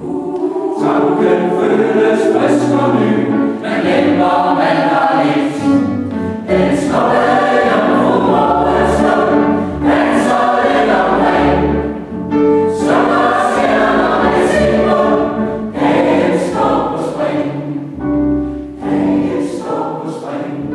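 Mixed choir of women's and men's voices singing a song in phrases, with brief breaths between lines.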